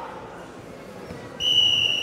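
Referee's whistle: a single steady, high blast starting about one and a half seconds in and lasting about a second, stopping a full hold on the mat.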